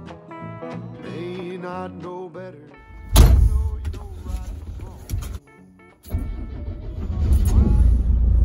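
A country song with a male singer plays for about three seconds. It cuts off suddenly into a loud low rumble with noise inside a lorry cab, which drops out briefly about two seconds later and then comes back.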